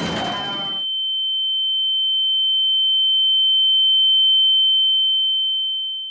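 The tail of a crash noise dies away in the first second, leaving a single steady high-pitched electronic tone: the ringing-in-the-ears effect that follows a crash. The tone swells slightly and begins to fade near the end.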